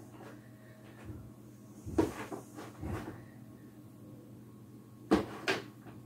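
Hands working compost in a plastic tub: a few short knocks and scrapes against the plastic, one about two seconds in, a smaller one near three seconds, and two close together near the end.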